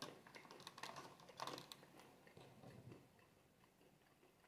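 Faint light clicks and taps from a mate cup and its metal straw (bombilla) being picked up and handled, bunched in the first two seconds, then near quiet.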